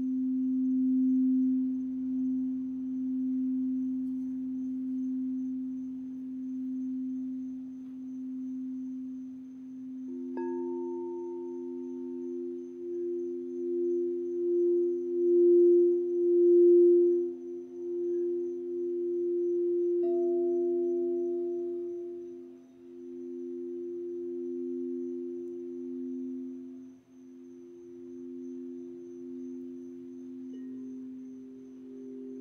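Crystal singing bowls ringing. One low bowl tone is held throughout with a slow wavering pulse. About ten seconds in, a second, higher bowl is struck and then kept singing alongside it, swelling and ebbing, and a light strike near twenty seconds adds a brief higher ring.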